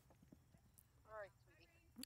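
Faint hoofbeats of a horse cantering on arena sand, a few soft thuds, with a brief faint voice a little past halfway.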